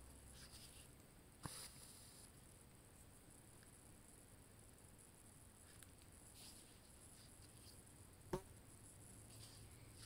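Near silence: room tone, with two faint taps, one about a second and a half in and one near the end.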